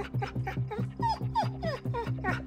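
Pit bull shut in a kennel whining, a quick string of short high whines that each fall in pitch, about three a second, the sign of a dog agitated at being confined. Background music with a steady beat runs underneath.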